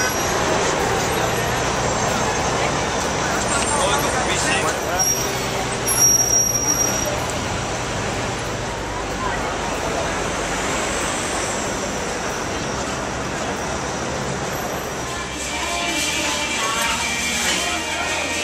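Busy city street ambience: steady traffic noise with crowd chatter.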